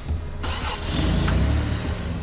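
Cartoon monster-truck engine sound effect: a low engine rumble that starts suddenly and grows louder over the first second and a half as the trucks drive in.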